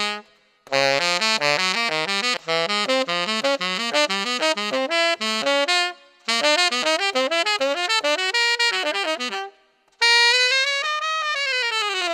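Yanagisawa TW01 tenor saxophone, played with a Guardala Studio mouthpiece and Vandoren ZZ reed, running through fast lines of notes with three short breaks. Near the end a long note bends steadily downward in pitch.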